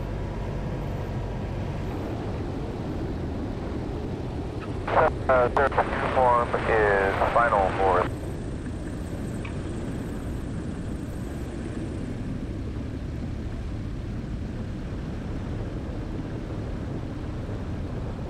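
Zenith CH-750 Cruzer's engine and propeller running steadily in flight, a low drone.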